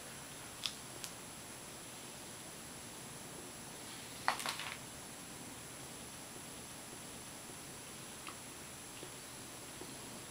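Quiet room hiss with a man chewing a mouthful of taco: a few faint mouth clicks near the start, one short louder smack about four seconds in, and two small clicks near the end.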